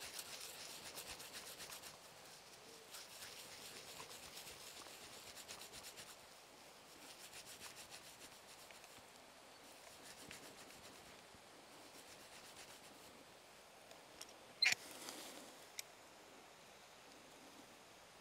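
Grass rolled and rubbed between the palms, a faint steady rustling, crushing the blades until the cell walls break so the sap can be pressed out. A short sharp click sounds about three-quarters of the way through.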